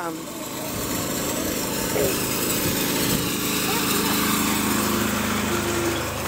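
A small engine running steadily nearby. Its drone builds over the first second and then holds level.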